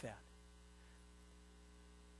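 Near silence with a steady low electrical mains hum.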